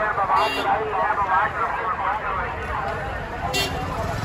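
Busy street ambience: several people talking around the camera, with passing traffic and two short, high beeps, about half a second in and again near the end.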